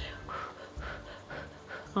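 Soft, breathy pulses and mouth sounds from a person tasting a spoonful of food between words.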